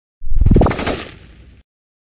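Channel-logo intro sound effect: a sudden loud hit with a rapid rattle and a quick rising sweep, fading over about a second and then cutting off abruptly.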